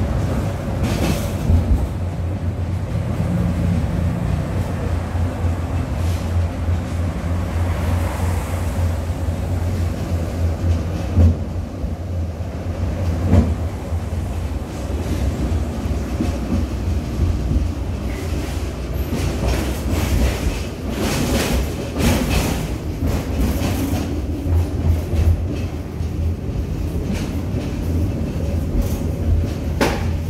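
Ride inside a moving tram: a steady low running hum, with irregular knocks and clatter from the wheels on the rails, coming more often about two-thirds of the way through.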